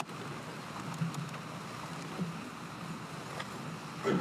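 Steady room tone with a faint low hum and a few faint ticks.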